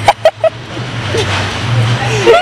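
Young women laughing in a few short bursts at the start, then a steady low hum with background noise.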